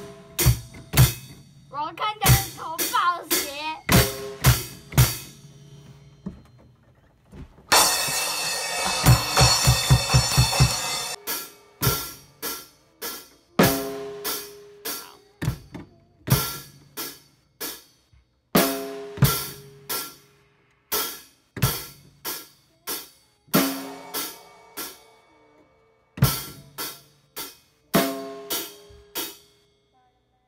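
An acoustic drum kit played by a child: short groups of stick strokes on the snare and other drums, separated by brief pauses. About eight seconds in, a dense three-second stretch of sustained ringing sits over a fast roll of low drum strokes. The playing stops shortly before the end.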